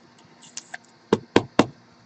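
Hard plastic trading-card case being handled: a couple of light clicks, then three quick sharp knocks about a quarter second apart.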